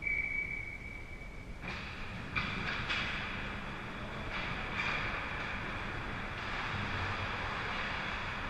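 Ice hockey skates scraping and carving on rink ice, several strokes after a steady high tone that lasts about the first second and a half.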